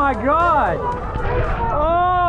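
A person's voice making drawn-out exclamations without clear words, each rising and falling in pitch: one about half a second in and another near the end.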